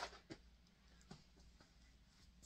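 Near silence: room tone with a few faint light taps of small objects being handled on a table.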